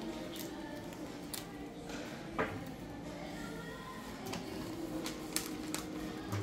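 Red wrapping paper being folded and creased by hand around a gift box, with crinkles and short paper rustles and a sharper crackle about two and a half seconds in.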